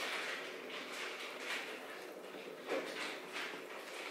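A person chewing a bite of a tuna salad sandwich with wilted lettuce: faint, soft mouth noises, a little louder about one and a half seconds in and again near the three-second mark.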